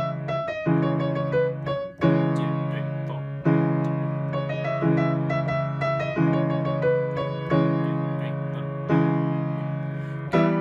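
Piano played with both hands: left-hand chords, a new one struck about every one and a half seconds and held, under a right-hand melody.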